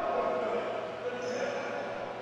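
Indistinct voices of volleyball players carrying through a reverberant gymnasium, with a single ball thud right at the start.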